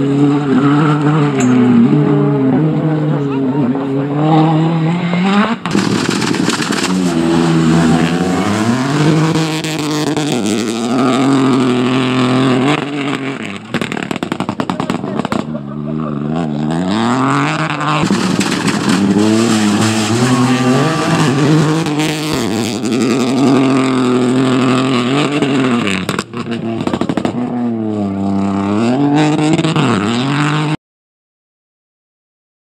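Rally cars driven hard on a gravel stage, one after another. Their engines rise and fall in pitch with each gear change and lift, and the sound switches abruptly from one car to the next.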